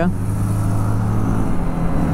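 BMW G 310 R's single-cylinder engine running steadily while riding at an even pace, with road noise.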